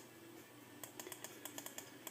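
Faint keystrokes on a Compaq laptop keyboard: about a dozen quick taps in the second half, as keys are pressed to step through the dates on a calendar.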